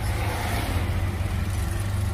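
A tuk-tuk's engine running with a steady low drone, heard from inside the open passenger cab, with the noise of surrounding car and motorbike traffic.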